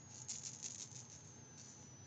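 Faint rustling and soft light taps of a kitten pawing at a toy on fleece bedding, mostly in the first second.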